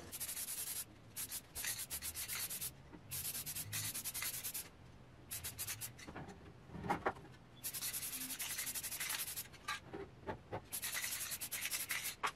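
Rust-Oleum Bright Coat metallic aluminum aerosol spray paint hissing from the can's nozzle in repeated bursts of up to about two seconds, with short pauses between them. There is a brief knock about seven seconds in.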